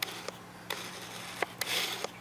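Handling noise from a camera being adjusted by hand: a few light clicks and soft rubbing, with a brief rustle near the end.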